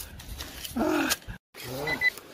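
A person's voice making short wordless exclamations of surprise, two brief sliding 'oh'-like sounds, broken by a moment of dead silence between them.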